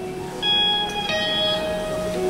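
Electric and acoustic guitars playing a slow instrumental intro: a note is struck about half a second in and another about a second in, each left to ring.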